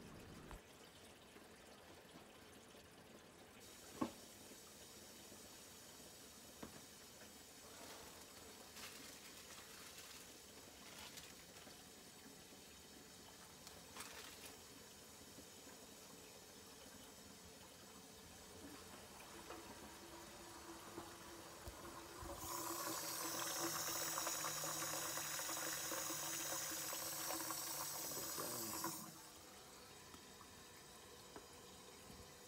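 Water running at a kitchen sink during a leak test of its freshly re-plumbed drain: faint water sounds at first, then, from about 22 seconds in, a louder steady rush of running water for about six seconds that cuts off suddenly.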